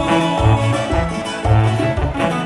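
Live regional Mexican band music: sousaphone bass notes in a steady on-off pattern under plucked guitars.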